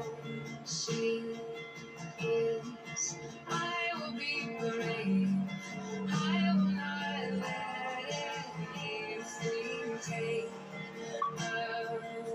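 Closing music: a pop song with a sung melody over sustained accompaniment.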